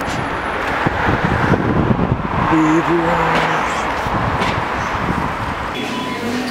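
Steady road-traffic and street noise, with a brief voice fragment around the middle.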